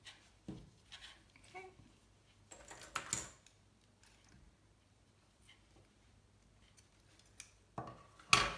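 Faint handling sounds of bookbinding thread and paper pages as a knot in the thread tails is tied and pulled tight: a few soft rustles and clicks, the loudest about three seconds in, then near quiet.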